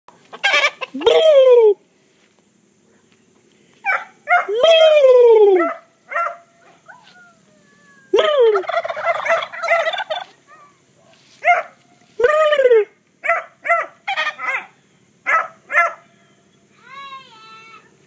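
Domestic turkey toms gobbling in repeated loud bursts, set off by a shouted "boo" about a second in. Another cluster of gobbling comes around the middle, followed by shorter bursts and a fainter call near the end.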